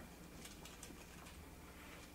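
Near silence: faint room hum, with a few soft scratches of a marker writing on a whiteboard about half a second to a second in.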